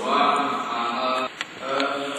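A man's voice into a microphone in long, level, chant-like tones, breaking off briefly a little past the middle before going on.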